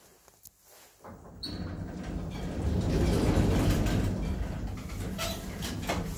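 Shcherbinka (ShchLZ) passenger lift car moving in its shaft: a low rumble that builds over about two seconds after a quiet start and then holds steady as the car travels.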